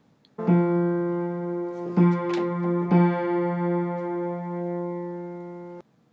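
A single piano note, F3, struck and left ringing, then struck twice more about two and three seconds in, while the tuner raises its pitch with the tuning hammer because the F3-A3 major third beats too fast. The note cuts off suddenly near the end.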